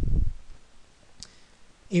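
A low thud at the start, then a single sharp keyboard key click about a second in: the Enter key confirming a formula.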